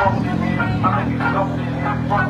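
A race car's engine running at a steady low idle, with voices over it.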